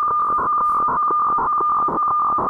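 Shortwave weather fax (HF radiofacsimile) signal on 4610 kHz, played through the software radio's audio as the plugin decodes it into a weather map. It is a steady tone with a fast, uneven crackle of picture data over it.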